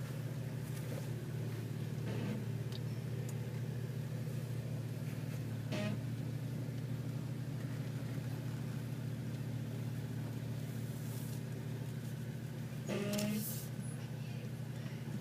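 The engine of an off-road vehicle running steadily at low revs on a rocky trail, heard from inside the cabin, with a few brief knocks and rattles, the loudest near the end.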